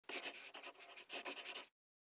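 Scratchy sound effect made of many quick rubbing strokes, in two bursts, cutting off suddenly just before the end.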